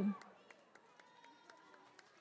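Faint footsteps on a stage floor, light sharp taps about every quarter to half second.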